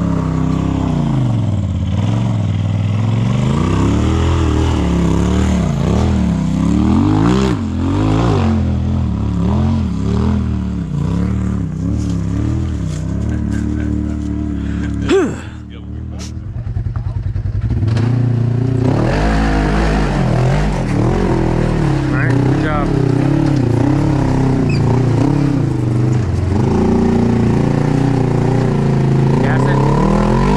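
Side-by-side UTV engine running under load while rock crawling, its pitch rising and falling with repeated short throttle pulls as it works over the ledges. The sound breaks off abruptly about halfway through, then another stretch of engine running picks up.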